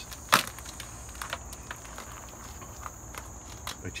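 A steady high chirring of crickets, with a sharp crack about a third of a second in and scattered light clicks and crackles from a dried luffa gourd's brittle skin as it is handled.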